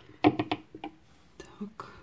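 A few sharp clicks and light rattles of handling: the glass seed beads, pearl beads and metal clasp of a beaded necklace knocking together as it is moved and picked up, in two short clusters.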